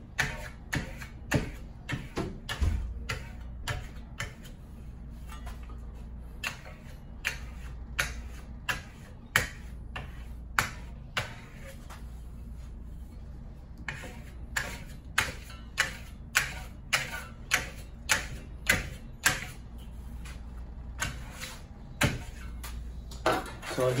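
Metal burnishing trowel stroking over wet black Venetian plaster: a run of short, sharp scrapes and clicks, a few each second, with a couple of brief pauses, as the plaster is burnished to a polish.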